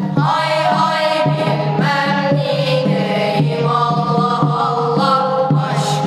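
A group of boys singing a religious chant-like hymn together in unison, in long melodic phrases, accompanied by a pair of Turkish kudüm kettledrums struck with wooden sticks.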